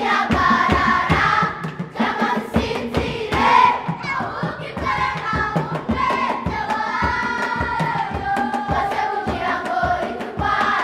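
Children's choir singing a song together, with a steady beat of hand claps.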